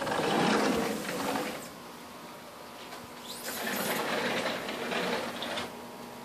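Sliding glass door rolling along its track: a rumbling slide at the start, then a second one about three seconds in, each lasting between one and two seconds.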